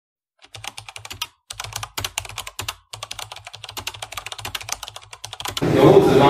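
A quick, irregular run of light clicks, like keys being typed, broken by two short pauses. Near the end it gives way to the louder hubbub of a classroom.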